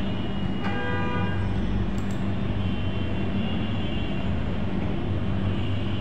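Steady low background hum over noise, with a short pitched toot about a second in.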